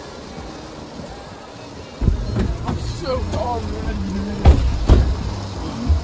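People getting into a car: a low rumble starts suddenly about two seconds in, then two heavy thumps of car doors shutting near the end, with a few spoken words.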